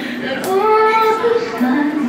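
A group of young children singing a song together, holding one long note and then dropping to a lower note near the end.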